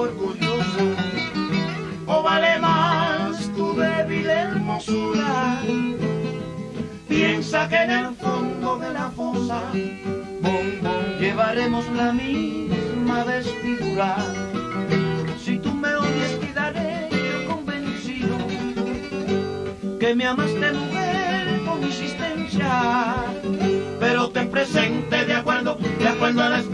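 Cuban son recording in an instrumental break between sung verses: the tres and the guitar play plucked lines over bass.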